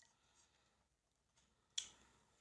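Near silence, broken by a single short, sharp click near the end.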